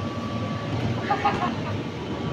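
Steady drone of an electric air blower keeping an inflatable bouncy castle inflated, with a faint steady tone above it and brief faint voices about a second in.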